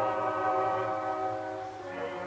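Opera music from a 1961 live recording: a long chord held steady and slowly fading away.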